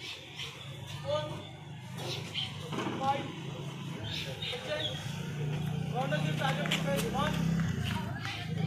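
High-pitched voices calling out and shouting over a steady low hum, which grows louder in the second half.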